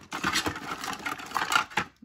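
A hand rummaging through a clear plastic storage tub packed with small plastic action figures and accessories: a dense, continuous run of clattering, scraping and rattling of plastic on plastic.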